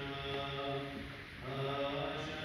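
Liturgical chant of the Assyrian Church of the East: voices singing long, held notes that move slowly in pitch, with a short break about midway before the chant resumes.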